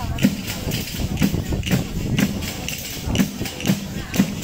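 Tammorra, the large frame drum with jingles, beating a steady tammurriata dance rhythm, about two strokes a second, each with a low thump and a rattle of jingles.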